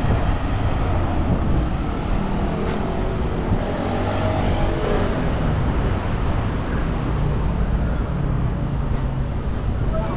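City street ambience with road traffic running steadily past.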